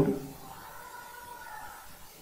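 The end of a man's spoken word, then a quiet pause of room tone with faint, steady high tones.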